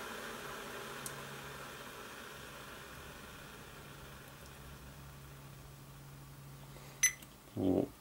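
Electric kettle, just switched off, with its water hiss fading gradually as it stops heating. Near the end comes a single short click.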